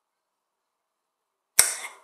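Dead silence, as if the sound drops out completely, for about a second and a half, then a single sharp click followed by a brief fading hiss.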